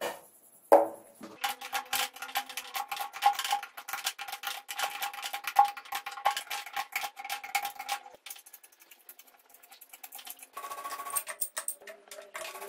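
Rapid metallic clicking and clinking of tools and engine parts being worked on a motorcycle cylinder head, with a single sharp click just under a second in and a shorter clattering patch near the end.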